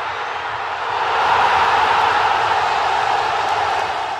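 Intro sound effect under an animated club-crest logo sting: a steady wash of noise that swells about a second in, holds, and starts to fade near the end.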